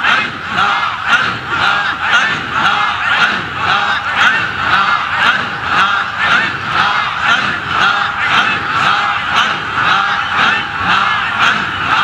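A large crowd of men chanting zikr together, calling "Allah" over and over in a fast, even rhythm. Each call is a forceful, shout-like stroke, the 'push' of Sufi heart zikr.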